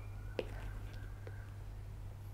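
Faint steady low hum and background noise, with one faint click about half a second in.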